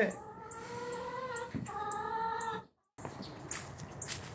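A hen calling twice in the coop, two long, drawn-out notes of about a second each, slightly falling in pitch. The sound cuts off suddenly about two and a half seconds in.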